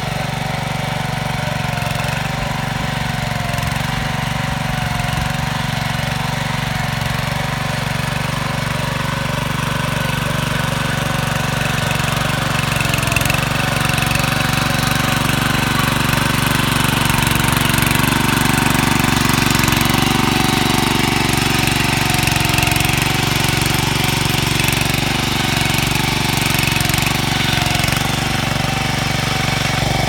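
Kishan mini power tiller's small single-cylinder petrol engine running steadily as the tiller works the soil, a little louder from about twelve seconds in.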